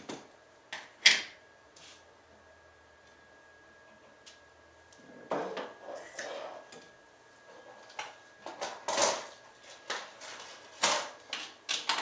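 Hard clicks and knocks of stamping tools and marker pens being handled on a craft mat: one sharp snap about a second in, then, from about eight seconds, a run of light clacks as marker pens are picked up and set down.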